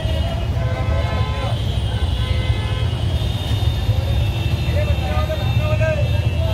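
Busy city street traffic: engines running with a steady low rumble, vehicle horns honking, and people's voices in the crowd.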